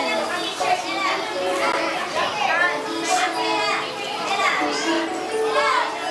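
A group of young children chattering and calling out all at once, with music coming in about halfway through.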